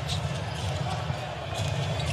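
Basketball game court sound: a ball bouncing over a steady low rumble of arena noise.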